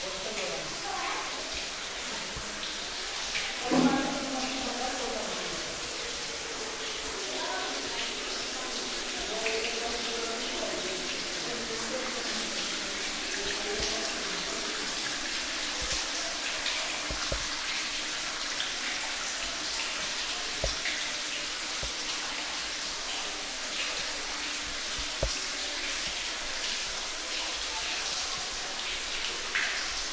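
Indistinct voices talking during the first part, over a steady hiss that goes on throughout, with a few faint clicks.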